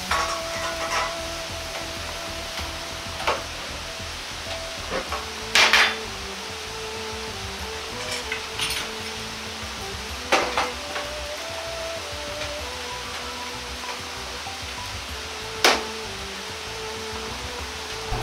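Steady hiss from a wok of water heating over a gas burner, with four sharp metal knocks of the ladle and wok, the loudest about six seconds in. Soft background music with held notes plays throughout.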